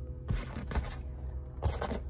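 A few short scrapes and rubs from hands handling things in the cabin of a moving car, over a low steady rumble of road noise.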